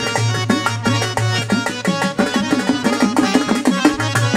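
Instrumental passage of Bangladeshi folk music: a harmonium plays a melody over a quick hand-drum rhythm whose bass strokes bend in pitch. A low drone under the music drops out about two and a half seconds in.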